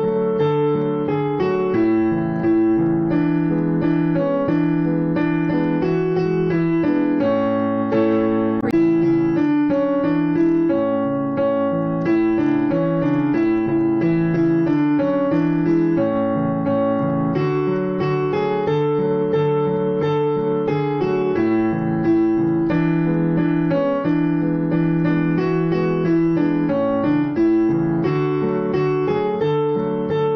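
Background piano music: a steady stream of notes over slowly changing chords.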